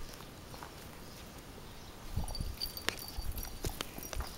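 Footsteps and light knocks on dirt and gravel: a quiet first half, then uneven thumps and sharp clicks from about halfway through.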